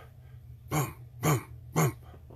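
A man's voice making three short, low 'boom'-like grunts about half a second apart, each falling in pitch, imitating a rhythmic thumping.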